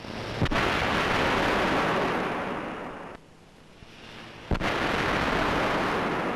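Five-million-volt artificial lightning discharges: two sharp cracks about four seconds apart, each followed by a couple of seconds of loud rushing, crackling noise.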